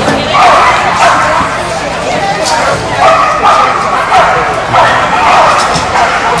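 A dog barking over and over in loud bursts, about one every second or so.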